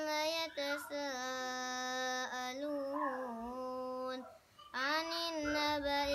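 A boy reciting the Quran in a melodic, chanted style, holding long notes that bend slowly in pitch. He breaks off for a breath a little after four seconds in, then starts the next phrase.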